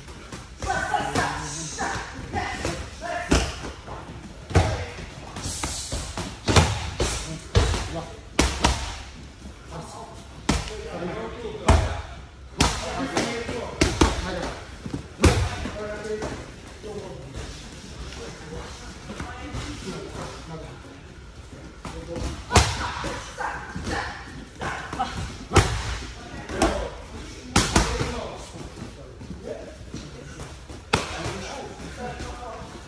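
Boxing gloves smacking into leather focus mitts: dozens of sharp slaps in quick combinations of a few strikes each, with short pauses between them.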